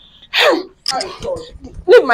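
A woman's short wailing cry that falls in pitch, heard in the middle of a shouting argument, followed by brief broken scraps of voice.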